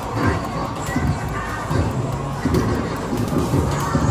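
Amusement arcade din: a ticket-redemption game machine's sound effects mixed with the steady hubbub of the arcade.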